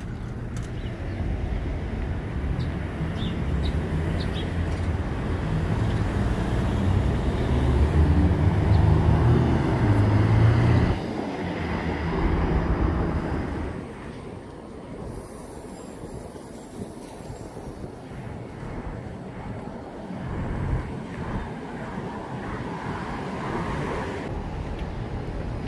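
City street traffic: a low vehicle rumble builds and then stops abruptly about halfway through, followed by lighter swells of passing cars.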